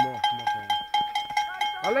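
A cowbell shaken steadily to cheer racers on, clanging about four times a second, with voices underneath. A loud shout starts just at the end.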